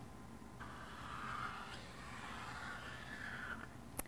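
Felt-tip marker drawing a long line on thick paper: a faint, steady scratchy hiss for about three seconds, starting about half a second in and stopping shortly before the end.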